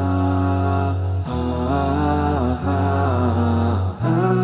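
Wordless vocal intro music: layered voices humming or chanting long held notes in slow chords. The chord changes about every second and a half.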